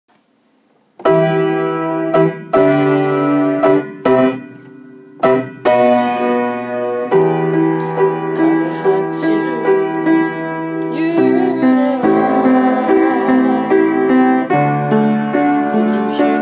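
Upright piano playing a ballad's introduction: chords begin about a second in, broken by short pauses, then a steady flowing accompaniment from about seven seconds on.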